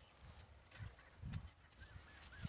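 Near silence: faint outdoor ambience with a couple of soft low thumps and a faint bird chirp near the end.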